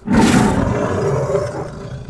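A big cat's roar played as a sound effect: one loud roar that starts suddenly, is loudest in the first half second and then fades away.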